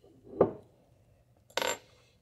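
Two brief metallic clinks from a steel tool bit blank and a small steel machinist's vise being handled. The first is a short click with a slight ring about half a second in; the second, sharper and brighter, comes about a second and a half in.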